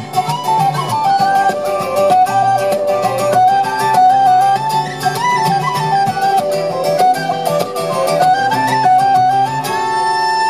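Live Celtic folk band playing a fast traditional tune: a quick, ornamented high melody on whistles over strummed acoustic guitar and frame drum.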